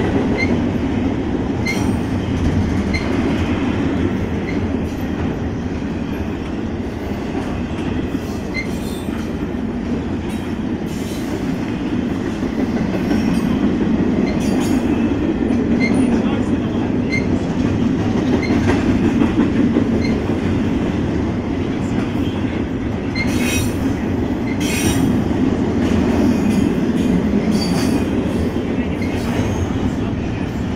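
Double-stack intermodal freight train's railcars passing close by: a steady rumble of wheels on the rails. Short high wheel squeals and clicks sound throughout, bunched together about three-quarters of the way through.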